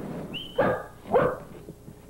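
A dog barking twice, about half a second apart, with a brief high squeak just before the first bark.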